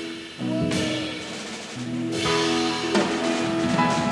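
Small jazz band playing an instrumental passage live: sustained chords over piano, double bass and clarinet, with drum kit and cymbals starting sharply twice.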